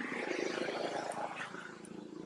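A macaque making a rough, raspy call that swells over the first second and fades out.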